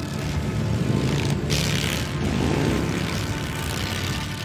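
Vintage vehicle engine running with a steady low drone, with a burst of hiss about a second and a half in.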